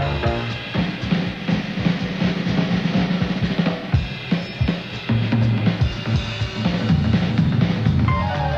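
Jazz drum kit taking a solo break in a live band: snare, bass drum and rim hits in an uneven run of strokes, with a bass line continuing underneath. The rest of the band comes back in near the end.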